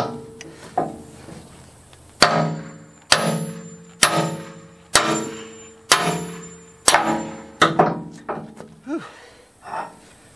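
A 16-pound sledgehammer striking a seized steel bucket pin on a Caterpillar loader, driving it out: about seven heavy blows roughly a second apart, each leaving the metal ringing briefly.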